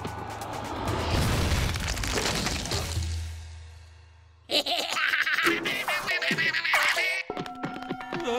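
Cartoon sound effect of a tall stack of bricks collapsing: a long crumbling crash with a low rumble that fades away over about four seconds. About halfway through, a sudden burst of high, squeaky cartoon sounds takes over, and music comes in near the end.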